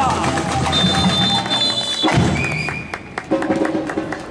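Live samba band playing: a sung note ends with a falling glide right at the start, then drums and percussion carry on under a steady high tone. The music drops away briefly near three seconds and then picks up again.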